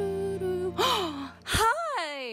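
Background music holds a note and stops about two-thirds of a second in. A woman then gasps in surprise, there is a short thump, and she lets out a rising-and-falling exclamation.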